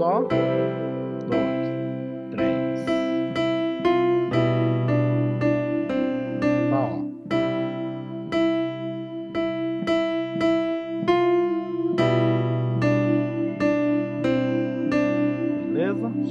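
Electronic keyboard with a piano sound playing the Am–F–C–G/B chord progression. The left hand holds block chords that change about every four seconds, and the right hand plays a simple single-note melody over them.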